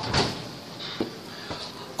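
Oven door of an electric range shut with a thump, followed by two light clicks, about a second in and near the end.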